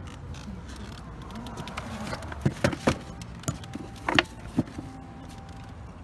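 Handling noise: several sharp clicks and knocks, bunched in the middle, as the phone is moved around the motorcycle's open plastic top trunk. They sit over a steady low rumble.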